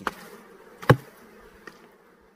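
Honeybees buzzing steadily around an open wooden hive, with a single sharp knock a little under a second in as the comb frames are worked with a hive tool.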